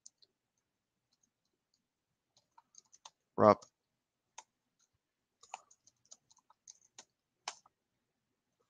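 Computer keyboard keystrokes: a sparse run of faint, separate taps as a command is typed into a terminal and entered.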